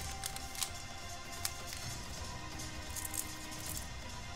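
Faint crinkling and rustling of a foil trading-card pack being torn open and the cards slid out by hand, a few light clicks scattered through, over quiet background music.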